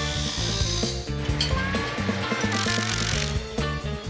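Cordless electric ratchet whirring in two short runs, in the first second and again about two and a half seconds in, as it tightens a band clamp on the turbo's pipe. Background music with steady bass notes plays throughout.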